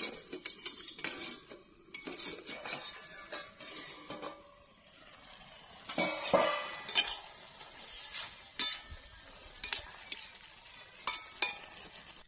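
A metal spatula stirs and scrapes vegetables in a metal karahi, with clinks of utensils and a louder metal clank about six seconds in as the pan's lid is lifted off.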